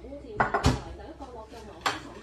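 Ceramic bowls and plates being set down on a table: three sharp clinks and knocks, the loudest a little under a second in and another near the end.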